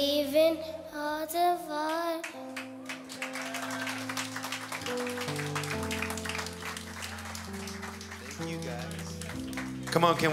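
A girl's singing, amplified through a microphone, ends about two seconds in. Applause then follows over held instrumental chords.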